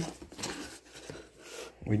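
Cardboard box flaps being pulled open by hand: a faint rustling scrape of cardboard.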